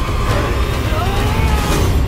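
A loud, dense film-trailer sound mix of deep rumbling effects and wavering, wailing voices, building to a climax and cutting off suddenly at the end.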